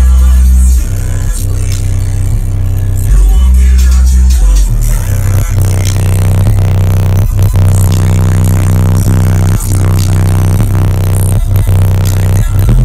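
Bass-heavy electronic music played at extreme level through American Bass 10-inch car subwoofers, heard inside the cabin. Deep bass notes are held and step to new pitches about a second in, around three seconds in and just before five seconds in, with a beat over them. The meter reads about 140 dB at 32 Hz.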